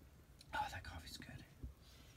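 A man whispering briefly under his breath, a faint unvoiced murmur lasting under a second from about half a second in, followed by a soft low thump.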